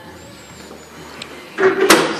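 Quiet handling of an enamel-top table's draw leaf and top. Near the end, the sliding top gives a scrape and one sharp knock as it closes into place over the tucked-away leaf.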